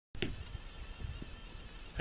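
Steady high-pitched insect chirring outdoors over a faint low rumble, with one short click just after the sound begins.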